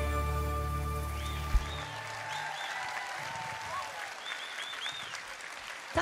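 A live band's final held chord rings out and fades over the first two seconds, with one sharp knock near its end. An outdoor audience's applause follows, with a few high whistles over the clapping.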